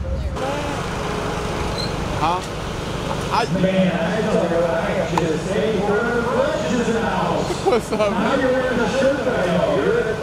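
Indistinct chatter of several voices talking over one another, growing louder and busier about three and a half seconds in.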